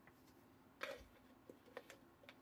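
Near silence with a few faint, short clicks and rustles of small objects being handled: one just under a second in, and two smaller ones later.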